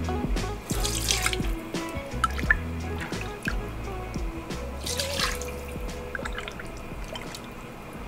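Ladlefuls of bone broth poured into a metal strainer over a pot, splashing twice, about a second in and again about five seconds in, with drips between. Background music with a steady bass line plays throughout.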